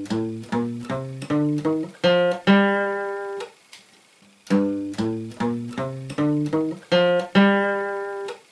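Acoustic guitar playing a one-octave G natural minor scale in alternate-picked single notes, stepping up from low G and ending on a held top G. The run is played twice, with a pause of about a second between.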